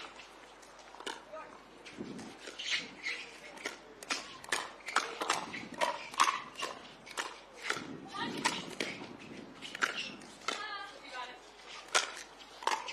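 Pickleball rally: an irregular run of sharp pops from paddles hitting the plastic ball, a couple per second, with voices in the background.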